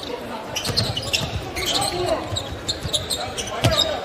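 Basketball being dribbled on a hardwood court, with repeated sharp bounces over the murmur of an arena crowd and indistinct voices.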